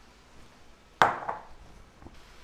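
A glass mixing bowl set down on a countertop about a second in: one sharp knock with a short ring that fades.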